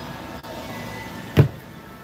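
The plastic lid of a Keter 30-gallon deck box shutting with one sharp knock a little past halfway, over the steady background noise of a large store.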